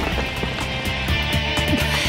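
Cartoon background music over a steady low mechanical rumble: the sound effect of the earth drill boring down into the ground.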